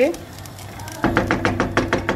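Wooden spoon knocking and scraping against a non-stick pot while stirring rice in water: a quiet start, then from about a second in a quick run of around ten sharp knocks.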